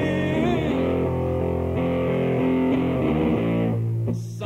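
Guitar playing slow, sustained chords that ring and change every second or so between sung lines of a slow song.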